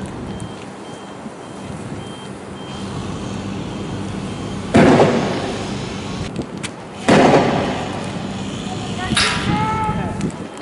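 Two loud bangs about two and a half seconds apart, each dying away over about a second, from riot-control weapons fired to break up a protest. A voice shouts near the end.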